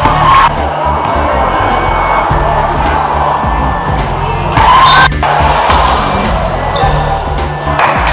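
Background music with a steady bass beat over the noise of a basketball crowd, with louder bursts of cheering about half a second in and again around five seconds in.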